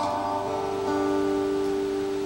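Steel-string acoustic guitar chord ringing, with two more notes picked in at about half a second and about one second, then sustaining and slowly fading.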